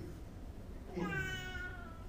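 A man's voice drawing out the word "in" for just under a second, a held, slightly falling hesitation about a second in, with little else before it.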